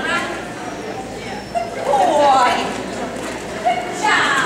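A handler's shouted calls mixed with a dog's excited barks during an agility run: a few short calls, the loudest falling in pitch about two seconds in.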